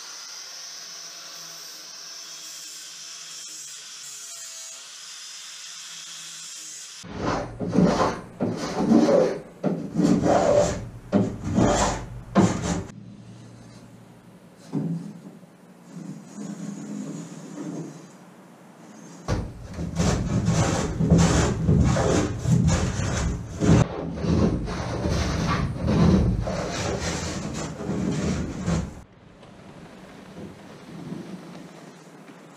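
Flap disc on an angle grinder sanding the plywood stem top, a steady hiss. From about seven seconds in, the sheer is trimmed in repeated rasping, rubbing strokes on wood: a burst of strokes, a quieter gap, then a longer dense run near the end.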